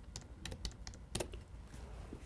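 Faint keystrokes on a computer keyboard, a quick run of separate clicks, as a four-digit stock code is keyed in to call up a chart.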